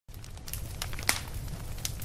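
Low hum with scattered crackles and clicks, one a little after a second in louder than the rest.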